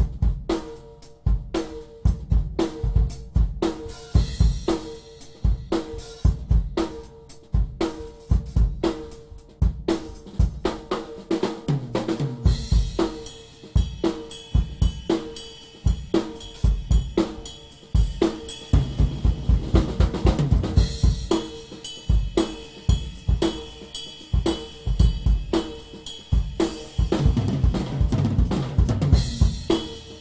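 ddrum Dominion maple-shell drum kit (20-inch bass drum, 13-inch snare, 12-inch tom, 14- and 16-inch floor toms) played in a steady groove with hi-hat and cymbals. A tom fill falling in pitch comes about twelve seconds in, and the second half is busier, with more cymbal wash.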